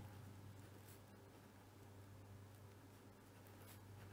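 Faint scratching of a fine-tip pen writing on paper, over a low steady hum.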